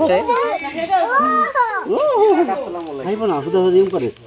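Young children's voices talking continuously, high-pitched.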